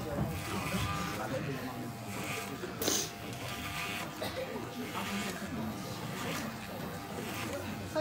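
Electric hair clippers buzzing steadily as they shave a head, under the murmur of a crowd, with one sharp click about three seconds in.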